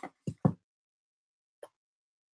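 A few short pops close together in the first half second, the last the loudest, then one faint click near the end. Between them there is dead silence, as on noise-gated call audio.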